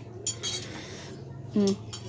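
Spoons clinking against plates and bowls during a meal, with a few light clinks in the first half second. A short voiced 'uh' near the end is the loudest sound.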